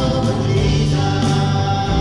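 Church praise band playing a worship song: several voices singing together over acoustic guitar and band accompaniment.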